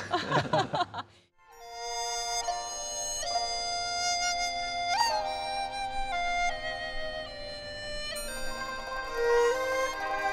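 About a second and a half in, a Chinese bamboo flute (dizi) starts playing long held notes over a small Chinese traditional instrument ensemble. A sharply attacked note that scoops upward stands out about five seconds in.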